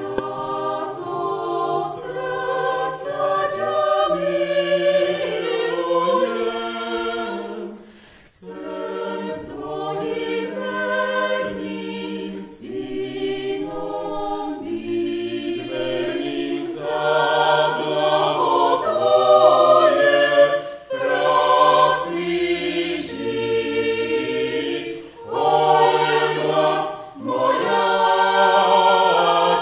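A choir singing unaccompanied, several voices holding chords through long phrases, with brief breaks between phrases, the clearest about eight seconds in.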